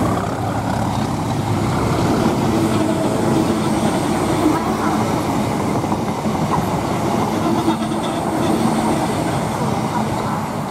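Train of Orion Class 768 parcels units running past at speed behind a Class 37 diesel locomotive: a steady, loud rumble of wheels on rail with clickety-clack over the rail joints.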